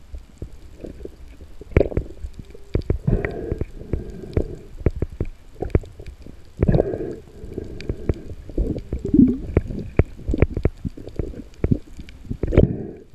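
Underwater handling noise heard through a camera housing: irregular knocks, bumps and rubbing as a speared spotted knifejaw and the spear shaft are gripped and turned in the hands. The loudest bumps come about two, three, seven and nine seconds in.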